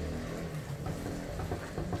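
A steady low hum, with faint squishing of a hand working soft, wet dough in a ceramic bowl.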